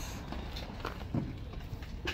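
Steady low outdoor background rumble with a few faint, short knocks or taps about a second in.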